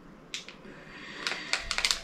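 A small plastic packet of printer-bed springs being handled: a few soft clicks and crinkles, then several in quick succession near the end.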